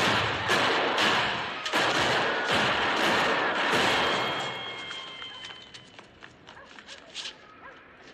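A rapid series of pistol shots in a film soundtrack, about a shot every half second, loud and echoing off the street. The shots stop about halfway through, and the sound dies away to faint scattered clicks and taps.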